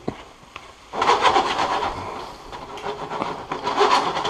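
A spoon scraping and stirring chopped vegetables around a Teflon frying pan, a rough run of quick scraping strokes that starts about a second in after a single sharp knock.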